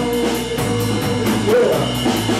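Live blues band playing, with electric guitars and a drum kit, the cymbals keeping a quick steady beat. A held note is sustained through the first half and bends in pitch near the end.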